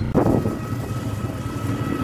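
Steady road and wind noise from a moving vehicle, with a faint high steady whine and a brief louder sound right at the start.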